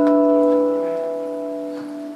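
Acoustic guitar holding one chord that rings out and slowly fades, in the opening of a tango.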